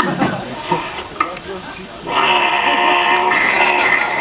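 Beatboxing played back over a hall's loudspeakers: choppy mouth sounds, then about two seconds in a loud, steady held tone with many overtones, an imitation of a techno synth.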